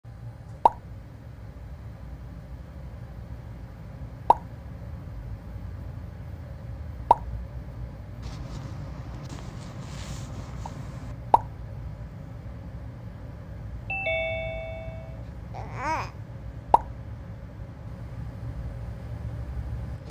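Low steady rumble with five sharp pops a few seconds apart, each ringing briefly. About fourteen seconds in comes a two-note chime, and about two seconds later a short wavering glide.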